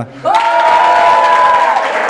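A small group clapping and cheering, with one voice holding a long, high cheer for over a second near the start.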